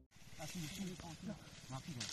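Faint voices talking quietly, over a steady hiss of open-air background noise.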